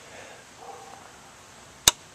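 A single sharp click near the end as the Iliminator 1750 W inverter's power switch is pressed, turning the inverter off after its low-battery cutout.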